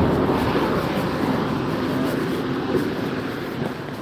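Road traffic: a vehicle passing on the main road, its noise loudest at first and fading away over the seconds.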